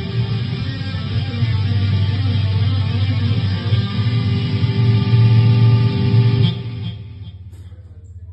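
Live rock band playing an instrumental passage on electric guitars and drums, heavy in the bass. The band cuts off about six and a half seconds in, leaving a fading ring.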